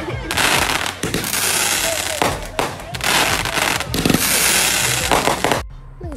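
Fireworks going off, many bangs packed close together in a dense, continuous barrage, cutting off suddenly near the end.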